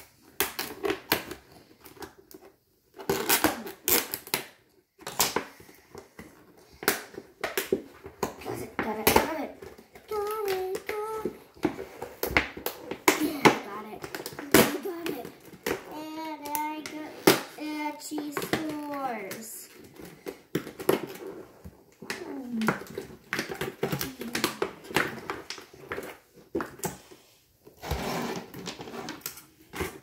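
Plastic capsule packaging of a Pikmi Pops Jelly Dreams toy being handled and opened by hand, with a run of clicks, taps and crackles of plastic and tape. A child's voice sounds briefly about ten seconds in, and again for a few seconds from about sixteen seconds.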